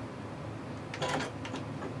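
Sewing machine running steadily as it stitches a seam, with a brief rustle or clunk about a second in.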